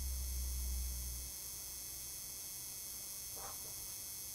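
Low electrical hum over a steady faint hiss of background noise; the hum cuts off about a second in, and a faint brief sound comes near the end.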